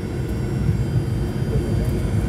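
Cabin noise of a Fokker 100 taxiing after landing: a steady low rumble from its Rolls-Royce Tay turbofan engines, heard from inside the cabin.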